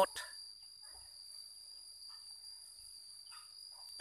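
Faint, steady high-pitched insect drone in the open air, with a few faint brief sounds scattered through it.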